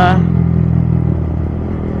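Yamaha MT-15 motorcycle's single-cylinder four-stroke engine running at a steady, even note while the bike cruises along the road.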